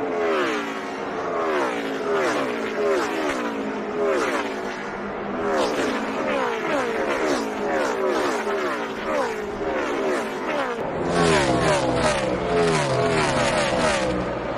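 NASCAR Cup Series stock cars' V8 engines at full racing speed, passing close by one after another in a continuous stream. Each car's engine note drops in pitch as it goes by. About eleven seconds in, the sound cuts to another pack of cars passing, fuller and deeper.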